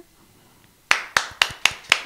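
Hand clapping: about six sharp, separate claps at roughly four to five a second, starting about a second in after a short hush that follows the end of an unaccompanied sung note.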